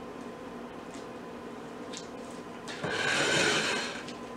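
A plate of tortilla pizza handled on the countertop: about a second of scraping noise near the end, over a steady low hum.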